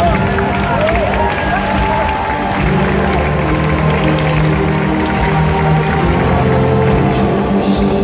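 Live string orchestra playing sustained chords, with audience voices and cheering over it in the first couple of seconds.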